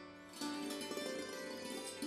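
Quiet instrumental background music: plucked-string notes playing a melody.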